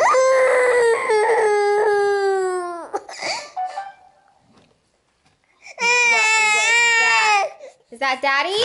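A baby crying: one long cry that falls in pitch and fades out about three seconds in, then after a pause of about two seconds a second, steadier cry.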